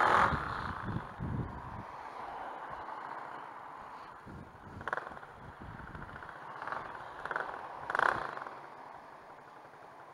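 Tuned Gilera DNA 180 scooter rolling slowly through a junction, its engine and wind noise picked up by a camera on the bike, with a few brief gusts or knocks. The low engine rumble fades after the first couple of seconds as the scooter slows almost to a stop.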